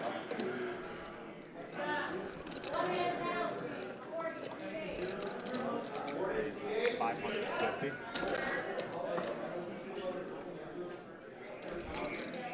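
Low background conversation among players at a poker table, with a few sharp clicks of clay poker chips being handled.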